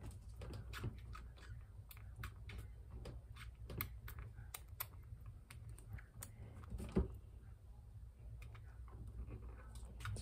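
Small irregular clicks and smacks, a few a second and a little louder around seven seconds in, as a three-week-old baby squirrel suckles formula from a syringe nipple. A low steady hum sits underneath.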